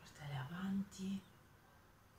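A woman's voice makes one brief murmured sound of about a second, in three short parts stepping up in pitch.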